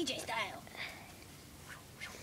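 A short burst of a person's voice in the first half second, then quiet.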